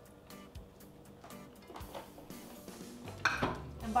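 A utensil scraping and tapping against a nonstick skillet as lentils and riced cauliflower are stirred, in scattered short clicks with a louder knock near the end, over quiet background music.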